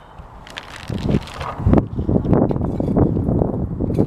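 Wind buffeting the microphone in a rough low rumble that builds about a second in, with small clicks and rustles of gear being handled on a wooden shooting bench.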